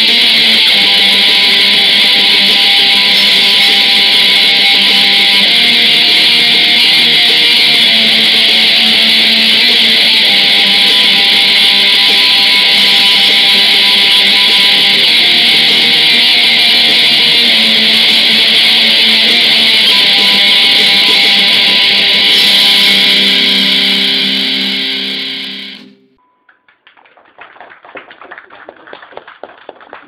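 Black metal band playing live: a dense wall of heavily distorted electric guitars holding long chords that change every couple of seconds. The music cuts off suddenly about 26 seconds in, leaving only faint scattered crackling.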